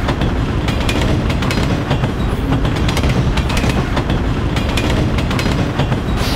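A train running on the rails: a loud, steady clatter of wheels with many sharp clicks, starting abruptly.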